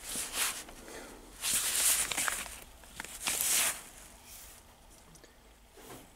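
Cardboard LP record jackets sliding and scraping against each other as records are flipped through by hand in a plastic tote. Three brief scraping rushes come about a second and a half apart, with a few light clicks, and the handling grows quieter after about four seconds.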